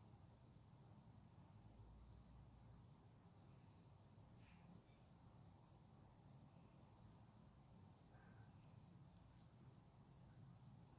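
Near silence: a low, steady room hum, with faint, short high chirps scattered throughout from distant birds outside.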